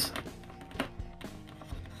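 Quiet background music with sustained notes, and a few faint clicks from plastic test leads being handled.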